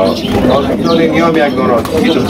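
Domestic pigeons cooing in a loft, mixed with a man talking.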